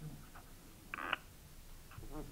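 Quiet room tone in a pause between speakers, with one brief faint pitched sound about a second in.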